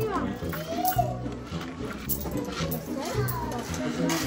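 Indistinct voices, including a child's, over background music with steady low notes.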